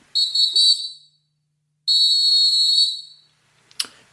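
Two high-pitched blasts of a referee's whistle, the first about a second long, the second starting about two seconds in and a little longer. It is a sound-effect cue moving the show into its next segment.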